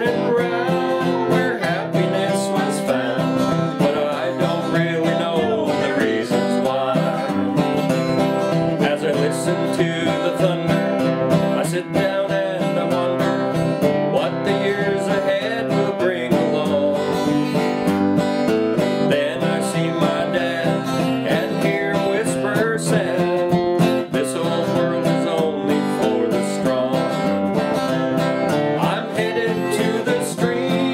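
Acoustic guitar playing a country-style song, with a steady picked-and-strummed rhythm.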